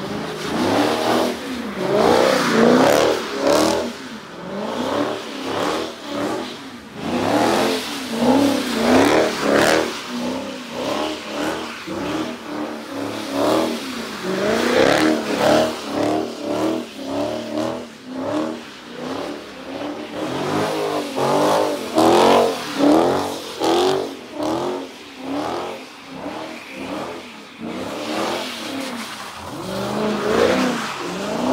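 A car engine revving up and falling back over and over, about once a second, as the car spins donuts in a pit.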